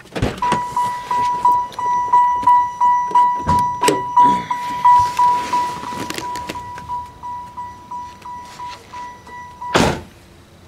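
Car door-open warning chime: a single high tone repeating about three times a second, growing fainter in the second half, with a few knocks and clunks. Near the end a loud thunk comes and the chime stops.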